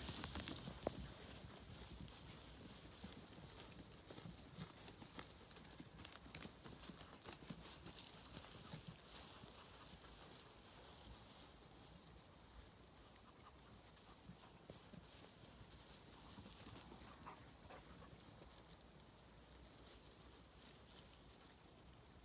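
Near silence with faint, scattered footfalls of a small flock of Zwartbles sheep moving over grass, thinning out after the first several seconds as the sheep settle to graze.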